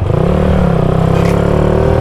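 Motorcycle engine running under way, its pitch climbing briefly about a quarter second in and then holding steady.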